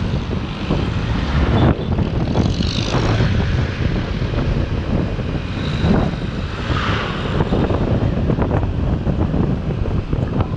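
Kymco Like 125 scooter engine droning steadily while riding, under wind rush and road noise on the microphone, with two brief swells in the noise, about three seconds and about seven seconds in.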